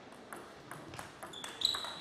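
A celluloid-free plastic table tennis ball clicking off the rubber-faced bats and the table during a serve and rally, several sharp clicks about a third of a second apart. A high, steady squeal joins them over the last half second.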